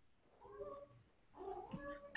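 Two faint, short voice-like calls, each with a clear pitch, about a second apart, on an otherwise near-silent line.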